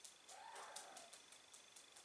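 Faint quick ticks from pigeons on a wooden floor, about five a second, with one soft, short sound in the first second.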